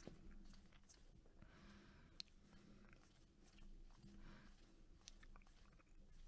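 Near silence, with faint clicks and soft rustles of a stack of trading cards being flipped through by hand; one sharper click comes a little over two seconds in.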